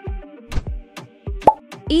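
Background music with a steady kick-drum beat under sustained keyboard tones. About one and a half seconds in, a short rising 'plop' sound effect marks the change to the next question.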